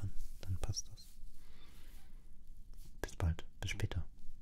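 A man's voice close to the microphone, making a few short, quiet murmurs and mouth clicks without clear words: a brief one about half a second in and a cluster near the end.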